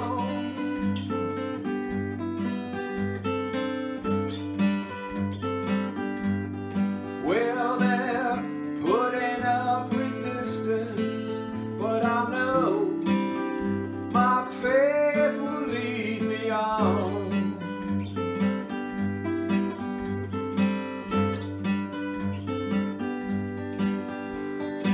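Steel-string acoustic guitar strummed in a steady rhythm, with a man singing over it through the middle stretch.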